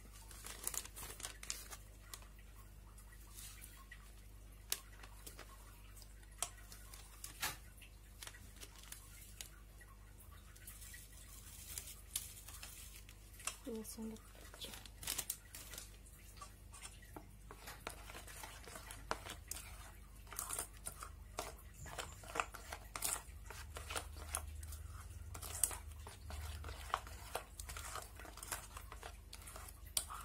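A plastic seasoning sachet crinkling as it is handled and snipped open with scissors, with scattered light clicks and rustles.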